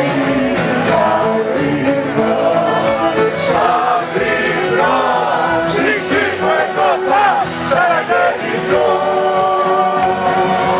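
A woman and a man singing a Greek song together live, with acoustic guitar and a small acoustic band, including violin, accordion, double bass and percussion, playing along.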